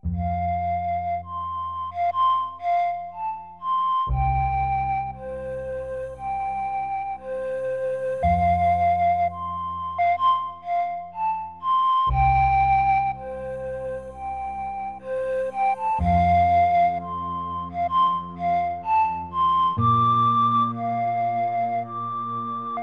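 Slow instrumental lullaby on flute over guitar accompaniment: a gentle flute melody with low chords changing about every four seconds.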